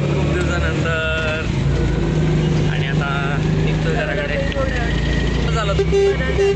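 Steady engine drone heard from inside a vehicle on the move, with voices talking over it.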